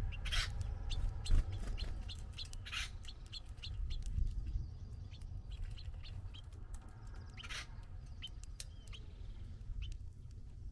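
House finches at a seed feeder: a scattered run of short, high chirps, with three louder brief bursts.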